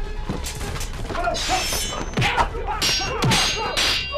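Fight-scene sound effects: a rapid series of blows, thuds and sharp swishing and clanging blade strikes, with short grunts, over dramatic music.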